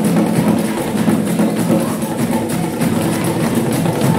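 Percussion-led music: drums and a wood-block-like strike pattern playing a fast, steady rhythm.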